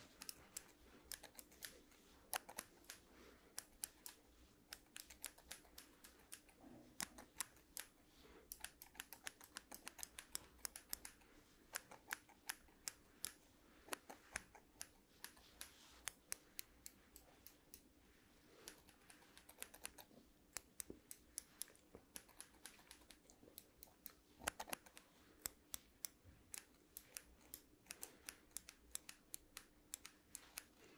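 Two pairs of scissors snipped in the air close to a microphone: crisp metal snips, several a second in irregular runs with brief pauses.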